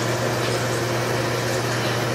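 Steady low hum with an even hiss, unbroken by any separate event.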